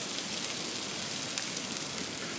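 Thin raw potato slices sizzling in olive oil on a stainless-steel Teppanyaki griddle heated to about 180 °C: a steady frying hiss with faint crackle.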